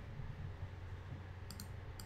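Computer mouse button clicking, a quick pair of clicks about one and a half seconds in, over a faint low hum.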